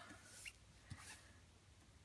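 Near silence, with faint rustling and a couple of soft taps as a small wood-mounted rubber stamp is dabbed onto an ink pad.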